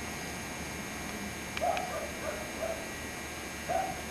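Several short animal calls, a quick run of four or five about a second and a half in and one more near the end, over a steady hiss.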